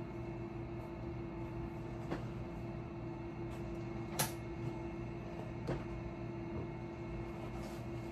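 Steady drone of road-construction machinery from outside, with a few light clicks and knocks from clothes hangers and garments being handled, the sharpest about four seconds in.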